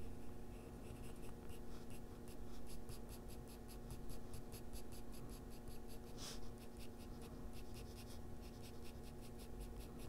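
Oil-based coloured pencil (Faber-Castell Polychromos) scratching on toned gray drawing paper in quick, short, feathery strokes, several a second, as kitten fur is shaded in.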